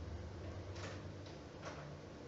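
Three faint, short clicks in under a second over a low, steady hum, as a hand handles something close to the microphone.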